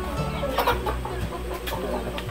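Chickens clucking, with short calls at about half a second in and again near the end.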